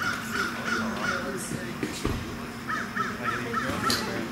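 A bird calling in two quick runs of short repeated harsh notes, about three a second: one run in the first second and five more calls near the end.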